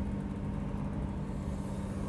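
Lamborghini 350 GT's V12 engine running steadily at low speed: an even low hum that holds one pitch, over road rumble.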